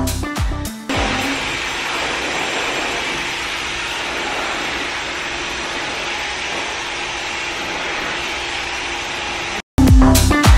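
Handheld hair dryer blowing steadily, a continuous even whoosh. Music with a beat plays for about the first second. The sound cuts out briefly just before the end as the music returns.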